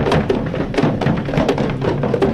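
Manipuri dhol barrel drums played hard and fast in a Dhol Cholom drum dance, a dense run of deep, booming strokes several times a second.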